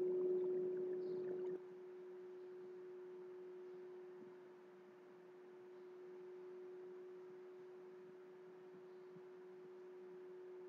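Faint background noise: a steady electrical hum under a low hiss. A louder rush of noise in the first second and a half cuts off suddenly.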